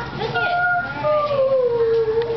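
A child's voice making long drawn-out howling calls: a short held high note, then a longer note that slowly falls in pitch, over the murmur of voices.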